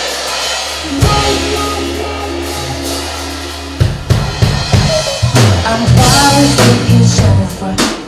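Live band: a held chord over a low sustained bass note starts suddenly about a second in, then the drum kit and bass guitar come in with a steady groove about four seconds in.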